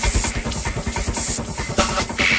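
Psytrance playing: a fast pulsing bassline under hissing high noise, with a bright noise swell near the end.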